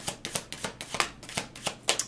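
A deck of tarot cards being shuffled by hand: a quick, even run of crisp card snaps, several a second.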